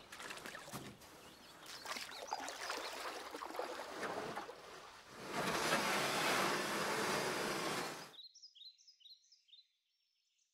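Water ambience: a low rushing wash with faint clicks that swells louder for about three seconds, then cuts off abruptly. Faint, repeated high bird chirps follow near the end.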